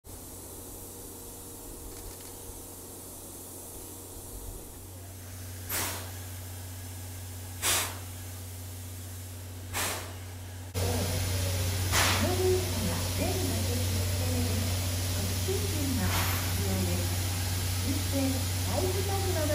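C11 steam tank locomotive standing with steam up: a steady low hum with short, sharp bursts of steam hiss every couple of seconds. About 11 s in it suddenly becomes louder, with people's voices in the background.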